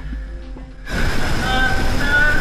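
A weird call from the far side of a clogged drainage pipe, which the narrator hears as a scared human voice. It breaks in suddenly about a second in, amid a rush of noise, with two drawn-out tones.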